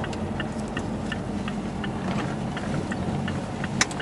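Car driving, heard from inside the cabin: a steady low engine and road rumble, with a light, even ticking about three times a second from the turn-signal indicator as the car turns off the main road.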